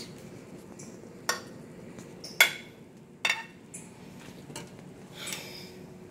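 Metal serving tongs clinking against a frying pan and a china plate as cabbage and corned beef is served out: three sharp clinks about a second apart, the middle one loudest, then a softer scrape near the end.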